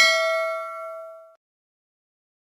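Bell-ding sound effect from a subscribe and notification-bell animation: a single struck bell tone ringing out with several clear overtones and fading away about a second and a half in.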